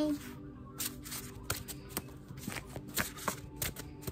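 Tarot cards being shuffled and handled by hand: an irregular run of quick card flicks and slaps, a few a second.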